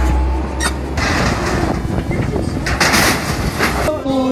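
Demolition by an excavator: a low, steady engine drone for about the first second, then a dense clatter and crash of sheet metal and debris, loudest near the three-second mark, with voices mixed in.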